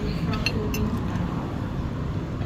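A metal fork clinking lightly against a ceramic plate a couple of times, over a steady low background rumble.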